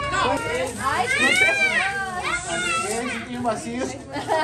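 Many adult and children's voices talk and call out over one another, with no clear words. About a second in, one long, high-pitched call rises and falls.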